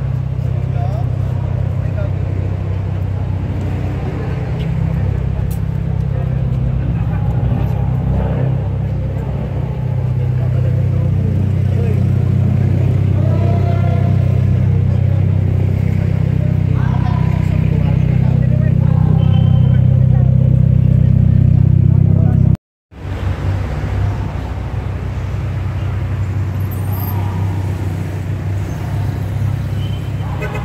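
A car engine idling, a steady low drone that swells a little, with people talking around it. The sound cuts out for a split second about three quarters of the way through.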